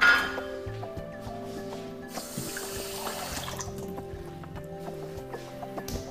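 A metal pan clink at the start, then a tap running water into a small stainless steel saucepan of sugar for about a second and a half near the middle, over background music.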